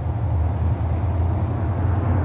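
Steady low outdoor rumble, the kind made by wind on the microphone and road traffic, as loud as the talk around it. A faint high whine joins near the end.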